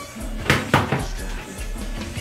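Two quick knocks with rustling about half a second in, from hands and hair moving during a hair flip.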